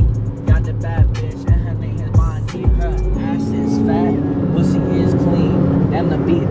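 A hip-hop beat with heavy bass kicks about twice a second plays inside a moving car, with a voice over it. The beat stops about three seconds in, leaving the car's steady road and engine rumble and voices.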